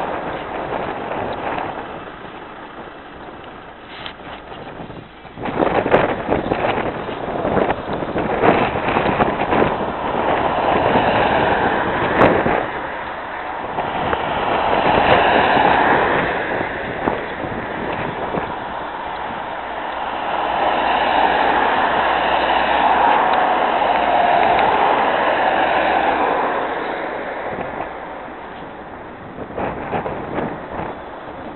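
Cars driving past close by on the road, the sound swelling and fading as each one goes by, with gusts of wind buffeting the microphone in the first half.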